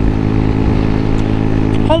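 125cc Baimo Renegade V125 cruiser motorcycle engine running steadily at cruising speed, with a low rumble of wind buffeting the microphone.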